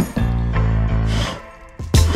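Background music with a beat: held deep bass notes and sharp drum hits.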